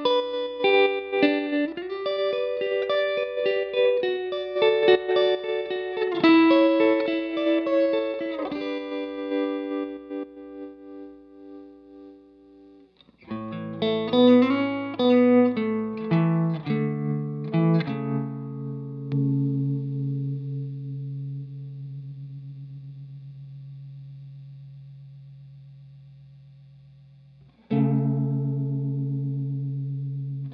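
Electric guitar played through a Mattoverse Electronics Inflection Point modulation pedal. A run of single notes dies away, then a new phrase ends in a held low note that pulses evenly as it fades. Another chord is struck near the end.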